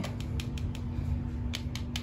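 Light clicks of fingertips and fingernails tapping on tarot cards, a few near the start and a quick cluster in the second half, over a steady low hum.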